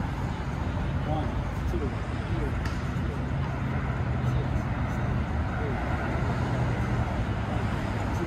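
Steady road-traffic noise, a constant low drone of passing vehicles, with faint voices in the background.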